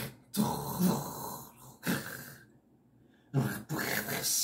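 A man's harsh, rasping growled vocalizing in bursts: a long growl of about a second and a half, a short one after it, then a pause, and another growl starting near the end.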